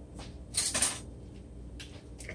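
Handling noise at a kitchen counter: a short hissy rustle or scrape about half a second in, with a few faint clicks.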